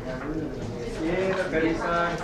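Several people talking at once, a murmur of overlapping voices in a classroom.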